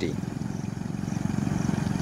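Motorcycle engine running steadily with a rapid low putter, growing slightly louder as it approaches.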